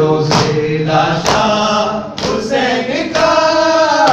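A group of men chanting a noha, a Shia lament, in unison, with hands slapping chests in matam about once a second to keep the beat, four strikes within these few seconds.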